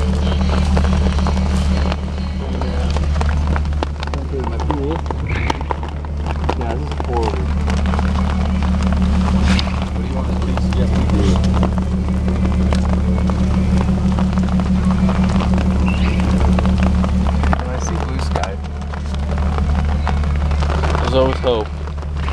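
Jeep Wrangler engine idling with a steady low hum, while rain falls on a plastic tarp over the occupants.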